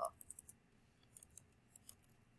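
Computer keyboard being typed on: two quick runs of faint key clicks as a word is typed, a short pause between them.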